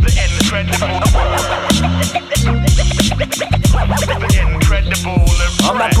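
Hip hop beat playing, with a deep bass line and a steady hi-hat, and turntable scratching over it.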